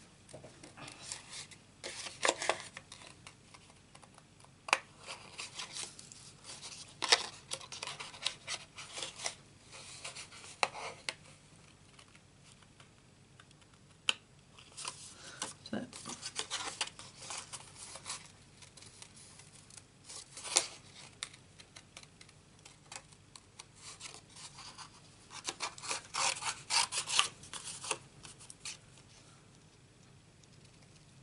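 Small scissors cutting around a stamped flower image in paper: runs of quick crisp snips, with pauses as the paper is turned, and the light rustle of the sheet being handled.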